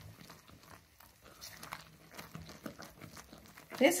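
Faint scraping and soft ticks of a silicone spatula stirring hot candy syrup in a nonstick pot as the syrup foams up from added baking soda.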